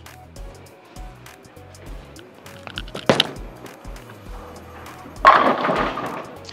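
A Black Hammer Pearl urethane bowling ball delivered down a lane: a sharp thud about three seconds in as it lands on the lane, then a little after five seconds a loud clatter of the ball hitting the pins, over background music with a steady beat.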